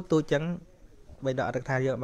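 A man preaching in Khmer: a few words, a short pause, then a long syllable drawn out on one steady pitch.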